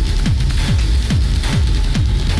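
Techno music: a steady four-on-the-floor kick drum, each kick dropping in pitch, a little over two beats a second, under hissy hi-hats and noisy high percussion.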